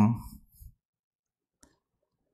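The last syllable of a spoken word fades out, then near silence broken by one faint computer mouse click about one and a half seconds in, as the presentation slide is advanced.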